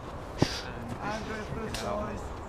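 A single sharp knock about half a second in, then a person's voice as someone scrambles up a steep dirt and rock path.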